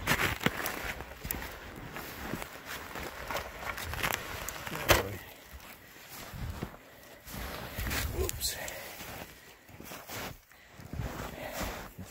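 Footsteps crunching through deep snow, uneven and irregular, with one sharp knock about five seconds in.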